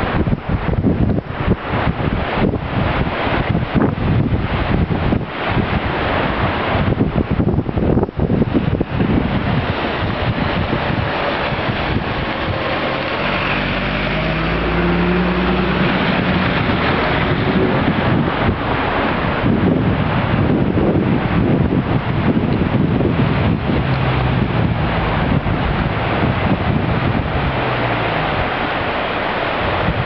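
Swollen river in spate rushing and churning steadily. Wind buffets the microphone in gusts over the first several seconds.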